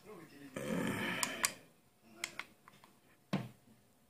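Light clicks and a knock from a handheld paint thickness gauge being handled and set against a car door's paintwork, with a brief breathy vocal sound near the start.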